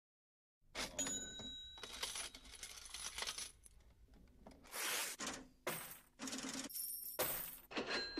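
Coins dropping and clinking in a quick run of jingles, a few of them ringing briefly. It starts about half a second in.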